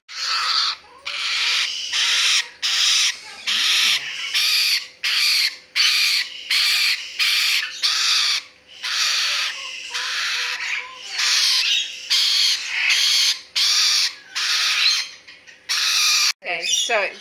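Young rainbow lorikeet calling over and over, about two short calls a second with brief gaps between.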